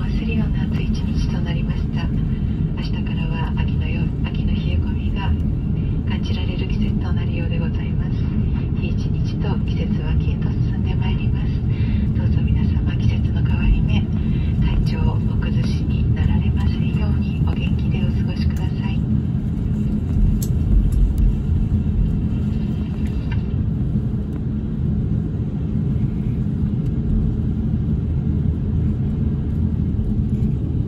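Jet airliner cabin noise while taxiing after landing: a steady low rumble of the engines and cabin air. Voices in the cabin until about two-thirds through.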